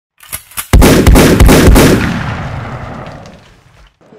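Intro gunfire sound effect: two light clicks, then a rapid string of loud shots over about a second, ringing out in a long echoing fade.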